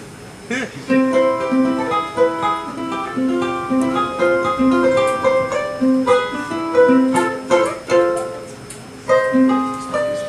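Solo ukulele playing a song's introduction. It starts about half a second in, pauses briefly near the end, then picks up again.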